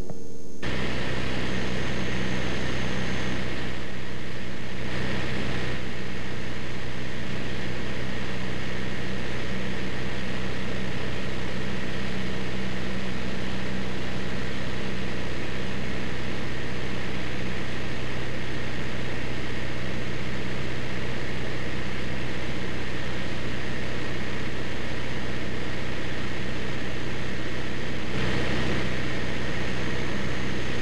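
Avid light aircraft's engine and propeller running steadily at constant power, with wind rush over the airframe. It grows slightly louder and brighter near the end.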